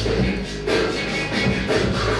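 Hip-hop breakbeat music playing for breaking, with a steady beat.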